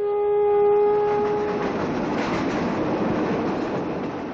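A train sounding one long, steady whistle that stops about a second and a half in, over the running noise of the moving train on its rails.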